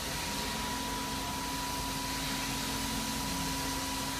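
Steady background hum and hiss with a faint, constant whine, unchanging throughout.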